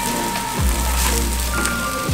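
Pork fat rubbed across a hot grill plate and marinated meat frying on it, sizzling with a steady hiss, under background music.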